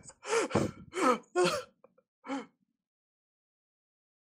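A person's voice making a handful of short, wordless exclamations over about two seconds, each with a sliding pitch, stopping about two and a half seconds in.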